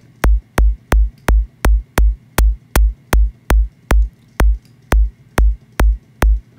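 Synthesized kick drum from the Vital soft synth repeating about three times a second, each hit a sharp noisy click over a deep sub body. Its noise transient is being shortened as the curve of its level envelope is bent.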